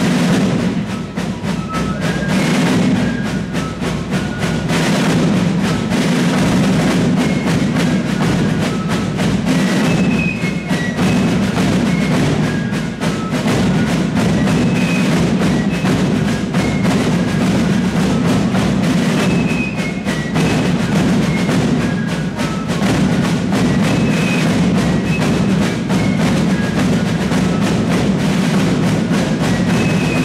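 Fife and drum corps playing: rope-tension snare drums and bass drums beat a dense, steady rudimental pattern under the high melody of several wooden fifes.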